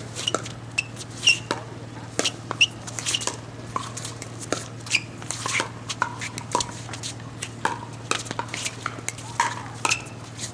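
Pickleball rally at the net: paddles strike the perforated plastic ball over and over in sharp pocks, mixed with short squeaks of shoes on the hard court and a steady low hum underneath.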